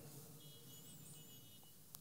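Near silence: room tone in a pause between spoken phrases.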